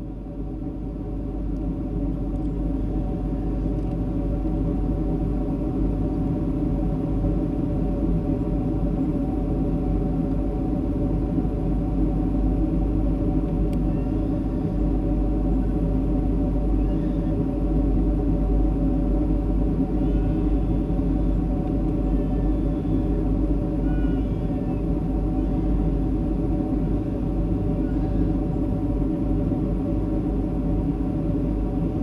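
Steady cabin drone of a Boeing 757 in flight, heard from a window seat: a low rush of airflow and engine noise with a steady hum over it, fading in over the first couple of seconds.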